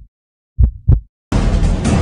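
Heartbeat sound effect: a deep double thump, lub-dub, about half a second in, one of a series about a second apart. A little over a second in, loud music starts abruptly.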